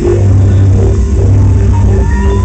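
Live band of saxophone, keyboards, electric guitar, bass guitar and drums playing an R&B cover, loud, with a deep bass note held steadily through.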